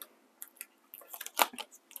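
Paper sticker sheet being handled on a desk: a few short crinkles and taps, the loudest about one and a half seconds in.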